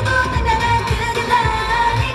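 K-pop song played loud over a concert sound system: a female vocal over a pop backing track with a steady kick-drum beat.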